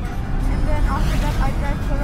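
Low, steady rumble of a moving car heard from inside the cabin, mixed with background music and brief snatches of a voice about halfway through.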